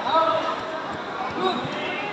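Voices talking indistinctly in a large hall, with a few dull thuds among them.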